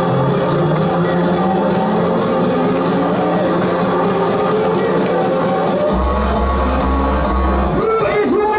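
Loud electronic dance music from a DJ set over a large sound system: a slowly rising tone builds, then a deep bass comes in about six seconds in.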